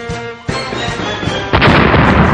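Action-film soundtrack: orchestral score with battle sound effects, a sharp hit about half a second in, then a loud blast about a second and a half in that carries on as a dense rushing noise.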